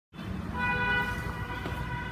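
A steady, horn-like pitched tone held over a low rumble, starting just after the beginning.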